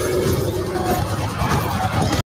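Movie trailer soundtrack playing through a video: loud, dense music mixed with action sound effects from a charging-rhino scene.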